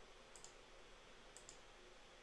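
Two faint computer mouse clicks about a second apart, each a quick press and release, over near silence.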